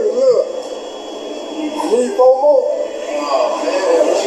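Speech only: voices from the interview video being played back, thin-sounding, with a brief lull about a second in.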